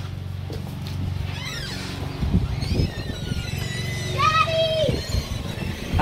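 A low, steady motor hum, with faint voices over it.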